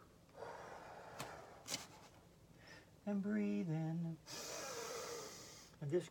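A woman's audible yoga breathing: a soft breath in, a brief voiced sound, then a long hissing breath out.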